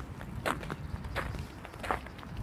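Footsteps on a frozen dirt path with patches of snow, three steps about 0.7 s apart.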